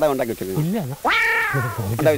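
Men talking in Malayalam, with one long high-pitched drawn-out cry, falling slightly in pitch, about a second in.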